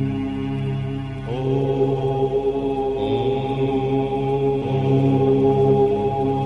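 Om chanting: several voices hold a long, steady 'Om' drone together, with a fresh voice gliding up into the tone about a second in.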